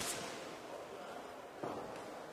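Sports hall background noise during a boxing bout: a steady, even haze of room noise, growing a little louder about one and a half seconds in.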